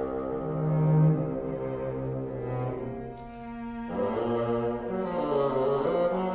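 A bassoon and string quartet playing slow, held notes. A low note swells loudest about a second in; the texture thins and quietens around the middle, then several parts re-enter together about four seconds in.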